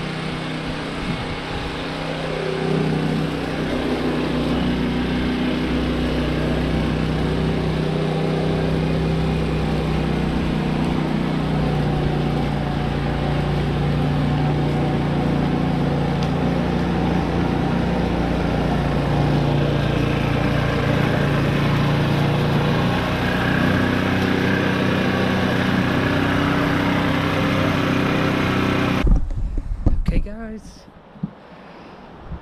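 Petrol cylinder lawn mower running steadily with its scarifying/lawn-rake cassette fitted, raking up leaves. The engine note grows louder about two and a half seconds in and cuts off abruptly just before the end.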